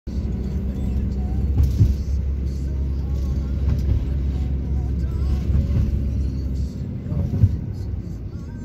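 Steady low rumble of road and engine noise inside a moving vehicle, heard through the cabin; it eases off near the end.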